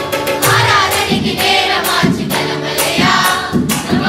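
A children's and women's choir singing a Tamil Christian song together, over electronic keyboard accompaniment with a steady beat.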